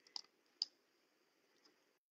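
Two faint clicks about half a second apart over near silence; the faint line hiss cuts out near the end.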